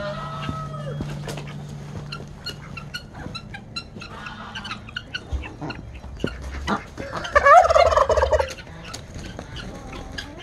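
Domestic turkey gobbling, a rapid warbling call lasting over a second about seven seconds in, the loudest sound here. A shorter falling bird call comes near the start, with scattered light clicks throughout.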